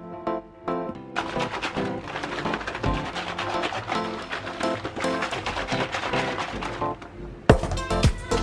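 Background music: a light, rhythmic keyboard tune at first, filling out into a busier track from about a second in, then breaking off abruptly into a louder new passage near the end.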